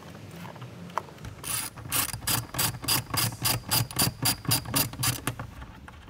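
Ratchet wrench clicking in a quick, even run of about five clicks a second, lasting about four seconds from a second and a half in, as the socket is worked on a bolt.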